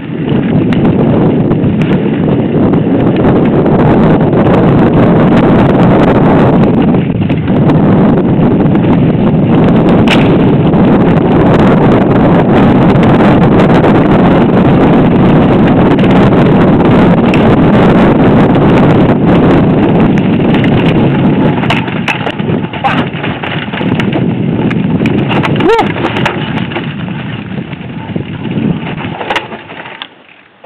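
Loud, steady rumble of wind and vibration on a bike-mounted action camera's microphone during a mountain-bike ride down a rough singletrack. In the last third it turns uneven, with scattered knocks and rattles of the bike over the trail.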